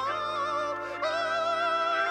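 Live rock band music: a man sings a high, held vocal line with wide vibrato over sustained Hammond organ chords.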